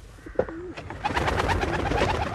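Pigeon wings clapping and flapping rapidly as a pigeon is released from the hands and takes off, starting about a second in.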